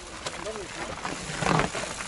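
A mountain bike being ridden up rock ledges, with a louder burst about one and a half seconds in, among brief vocal sounds from people watching.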